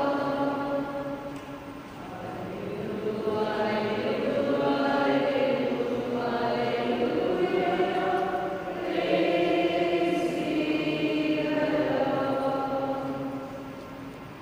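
A group of voices singing the gospel acclamation in slow phrases of long held notes, each phrase dying away briefly before the next; the last phrase fades out at the end.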